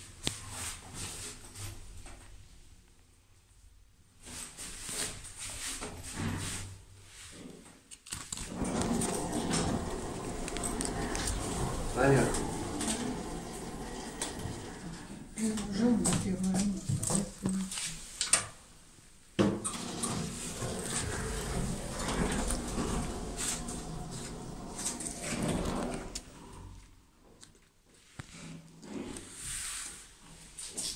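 People's voices in a small, enclosed lift car. The talk is quiet for the first few seconds, then runs fairly steadily from about eight seconds in until near the end.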